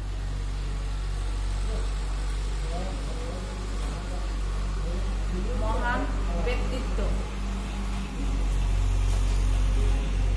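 Steady low hum made of several even tones throughout, with a person's voice heard briefly between about three and seven seconds in.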